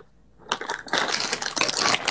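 Crackling, rustling handling noise on a wired earphone microphone as a hand brushes against it. It starts about half a second in and runs on densely.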